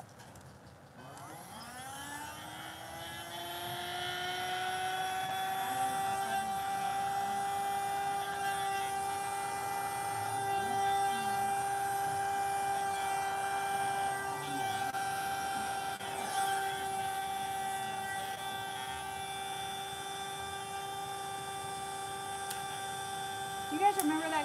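Handheld electric blower spinning up about a second in with a rising whine, then running with a steady hum as it blows wet acrylic pour paint outward into petals.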